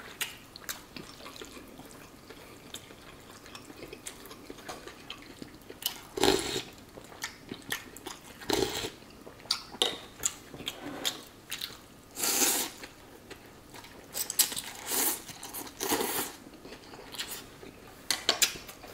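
A person eating pho close to the microphone: wet chewing and several short slurps of rice noodles and broth, the loudest about twelve seconds in, with many small clicks in between.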